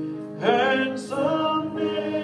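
Congregation singing a hymn, with sustained notes throughout. A louder voice comes in about half a second in.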